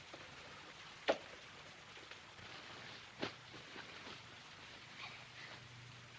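Quiet old film soundtrack: steady faint hiss with two short soft knocks, one about a second in and one just past three seconds, and a few smaller ticks.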